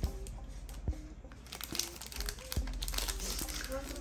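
Foil trading-card pack crinkling as hands tear it open and pull at the wrapper; the crackle grows denser about halfway through.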